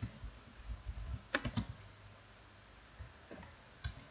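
A few separate keystrokes on a computer keyboard as code is typed, sparse and unhurried, the sharpest about a second and a half in and another just before the end.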